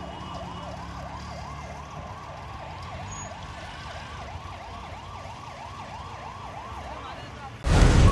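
Fire engine siren yelping, a fast rise-and-fall in pitch about three times a second, steady throughout, over the low rumble of engines and traffic. Near the end a much louder burst of sound cuts in.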